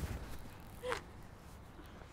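Quiet outdoor background with one short vocal sound, a brief breath or murmur, about a second in.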